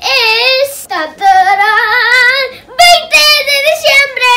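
A young girl singing a few loud, held notes with a wavering pitch.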